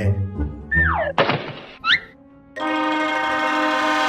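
Comic cartoon sound effects: a falling whistle, a short whoosh, a quick rising whistle, then from about two and a half seconds in a long steady horn-like tone.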